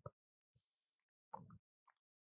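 Near silence, with two faint mouth clicks: one at the start and one about a second and a quarter in.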